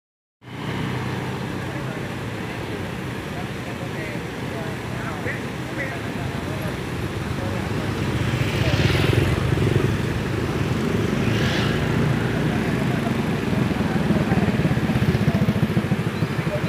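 Roadside traffic: motor vehicle and motorcycle engines running and passing, with a steady rumble that swells twice, mixed with indistinct voices.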